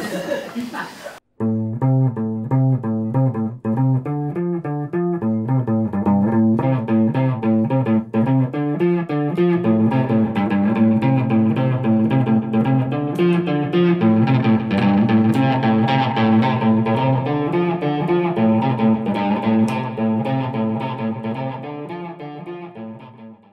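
Background music: plucked guitar playing a steady, repeating pattern of notes. It starts about a second in, just after a brief voice cuts off.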